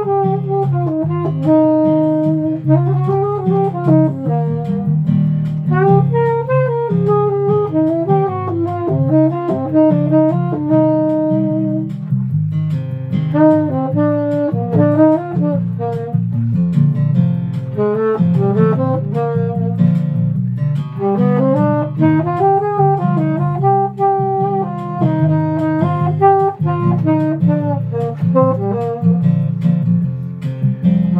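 Saxophone playing a melody in short phrases that rise and fall, over a steady low accompaniment, with brief breaks in the melody about twelve seconds in and again near twenty.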